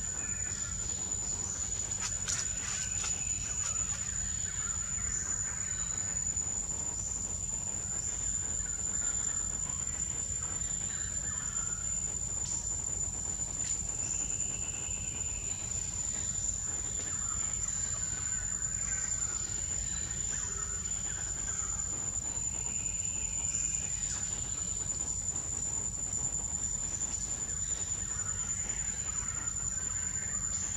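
Outdoor forest ambience: an insect trilling steadily at a single high pitch, with scattered short bird calls and a steady low rumble underneath.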